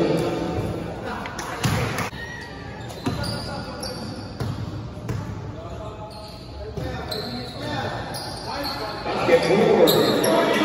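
A basketball bouncing on an indoor court floor: several separate bounces with echo in a large gym hall. Players' and spectators' voices are heard at the start and grow louder near the end.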